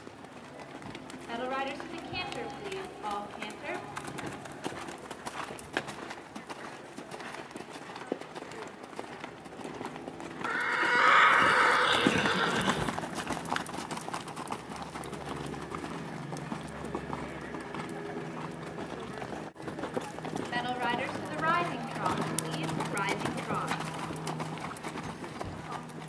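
Horse whinnying loudly for a couple of seconds about eleven seconds in, over a running patter of hoofbeats on the sand arena footing.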